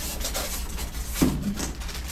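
Clear plastic parts bag crinkling and rustling as it is picked up and handled, with a small bracket inside.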